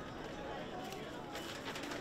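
Outdoor street-market ambience: indistinct voices of people chatting among the stalls, with a few light clicks and knocks in the second half.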